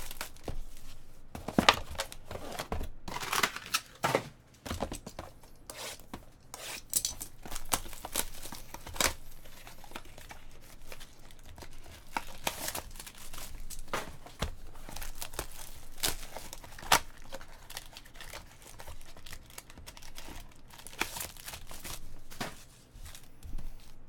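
Cellophane shrink wrap being torn and crumpled off a cardboard trading card box, then the box opened and its foil packs handled: irregular crinkling and tearing throughout.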